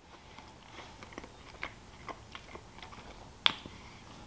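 A man chewing a mouthful of smoked pork: faint, scattered wet mouth clicks, with one sharper click about three and a half seconds in.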